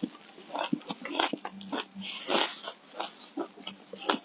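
Close-up crunching as a mouthful of packed shaved ice dusted with matcha powder is chewed: a quick, irregular run of crisp crunches, several a second.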